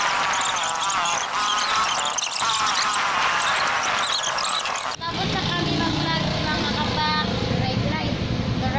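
Music with a voice for about five seconds, then a sudden change to a motorcycle engine running steadily at idle under voices.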